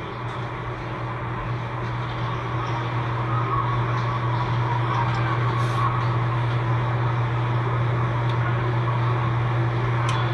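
Muffled, steady noise of a crowd jostling in a doorway, under a constant low hum, slowly growing louder. It is picked up by a phone's microphone.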